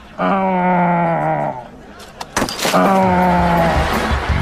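A person's voice giving two long, drawn-out cries, each about a second and a half and sliding slightly down in pitch.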